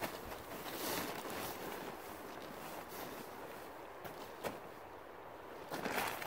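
Faint rustling and crinkling of a plastic tarp as someone shifts about inside a small tarp shelter, with a few soft ticks, a little louder in the first second or two.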